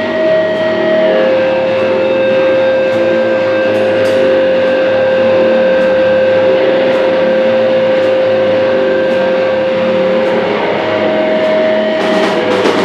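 Electric guitar feedback through a distorted amp, one held whistling tone that steps down in pitch about a second in and back up near the end, over a noisy amp drone, with light cymbal taps now and then.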